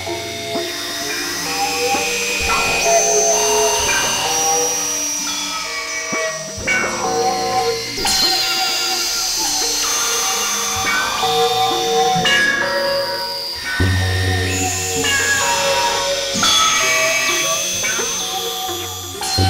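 Experimental synthesizer music: several held electronic tones and drones layered together, changing abruptly every few seconds, with a deep bass drone coming in about 14 seconds in and stopping just before the end.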